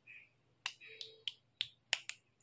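A run of about five sharp clicks and taps, about three a second, as small plastic toys are handled in shallow paddling-pool water.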